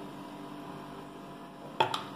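A metal spoon clinks twice against a plate near the end, over a steady electrical hum.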